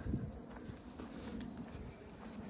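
Faint footsteps on bare dirt over a low rumble of microphone noise.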